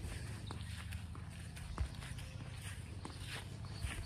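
Footsteps of a person walking on a grass lawn, light regular steps about two a second, over a steady low rumble, with one sharper click a little under two seconds in.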